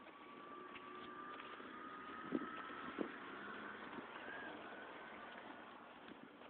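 A motor vehicle passing at a distance, faint, its engine note rising slowly and the sound growing a little louder through the middle. Two short knocks come about two and three seconds in.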